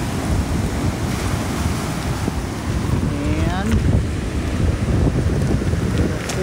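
Wind buffeting the microphone over the steady rush of ocean surf on a cobble beach. A brief rising call cuts through about three seconds in.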